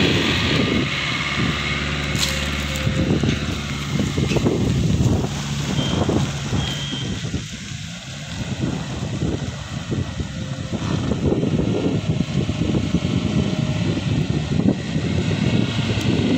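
A 2012 Maruti Swift Dzire LXI's four-cylinder petrol engine running as the car pulls away across a dirt lot, growing fainter about eight seconds in and louder again as it turns and comes back.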